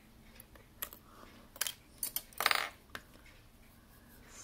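Small metal watchmaker's tools clicking and tapping against a quartz watch movement and its steel case: a few scattered light clicks, with a louder short rattle about two and a half seconds in.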